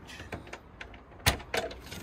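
Small metal catch on a trailer's storage-box lid being worked open by hand: a few light clicks, the sharpest just over a second in.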